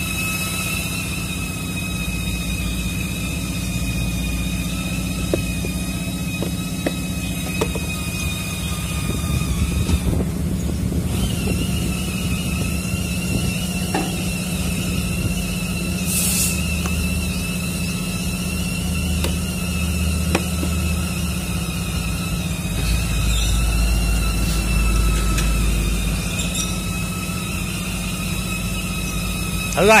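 Steady high-pitched whine of a grinder running nearby, over a low steady hum. The whine cuts out for about a second around ten seconds in, then starts again slightly higher.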